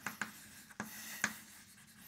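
Chalk writing on a chalkboard: a few short taps and scratches of the chalk as words are written.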